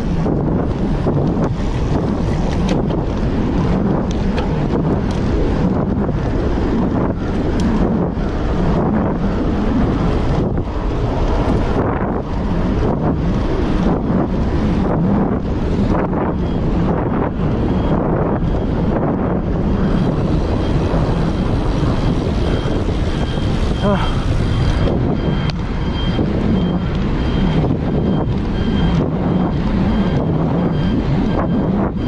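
Steady wind noise buffeting the handlebar camera's microphone while riding at road speed, gusting up and down throughout.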